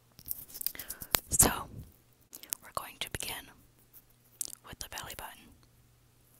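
Close-miked table knife digging into orange peel: three bursts of crackling and tearing with sharp clicks, the loudest about a second and a half in.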